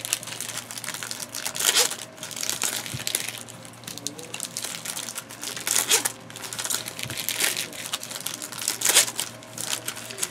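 Baseball trading cards being handled and shuffled through by hand, with irregular bursts of rustling and flicking of card stock.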